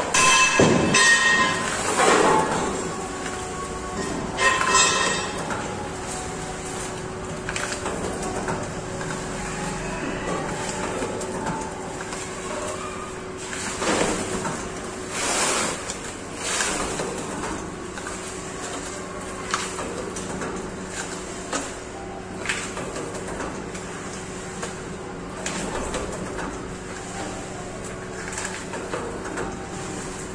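Belt-driven paper dona (bowl) making machine running: a steady motor hum with short knocks at irregular intervals from the forming die pressing foil-laminated paper bowls.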